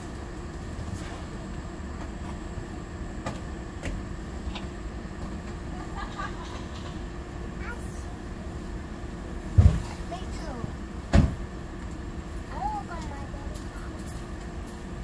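Steady low outdoor rumble with a few faint, brief voice-like sounds, broken by two sharp thumps about a second and a half apart, two thirds of the way through.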